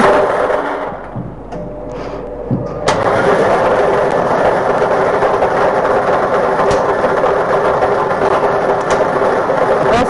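Lottery ball-draw machine's blower switching on suddenly about three seconds in, then running steadily with a hum while it mixes and rattles the numbered balls in its clear chamber.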